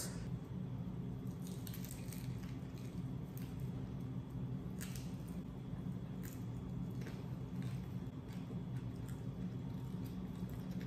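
Tacos de tripas being bitten and chewed, with scattered short crunching clicks from the crispy fried beef intestine, over a steady low hum.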